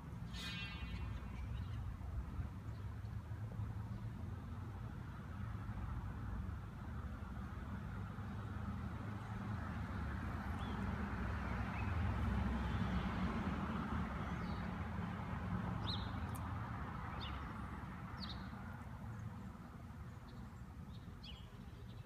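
Outdoor ambience: a low rumble of road traffic, with a vehicle passing that swells about halfway through and then fades. A few short bird chirps come in the second half.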